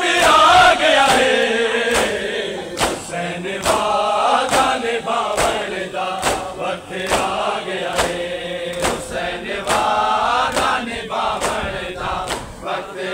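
Men's voices chanting a noha (Shia mourning lament) together. Sharp slaps of hands on bare chests keep a steady beat of about one a second.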